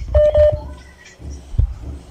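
A short electronic beep over a telephone line, a steady tone broken once near the start, followed by low hum and line noise.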